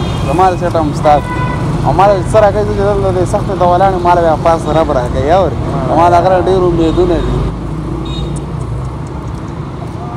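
Men talking over steady roadside traffic rumble, with a short car horn toot about a second in; the talk stops for the last couple of seconds and the traffic noise carries on.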